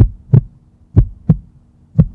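Heartbeat sound effect: a double thump, lub-dub, about once a second, over a faint steady low hum.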